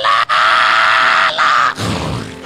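A preacher's voice through a microphone and PA holding one long, high shout on a single pitch, breaking off near the end.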